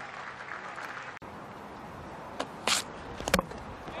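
Crowd noise at a cricket ground, with a break about a second in. Near the end come a short hiss and then a couple of sharp clicks: the ball hitting and breaking the stumps as the batter is bowled.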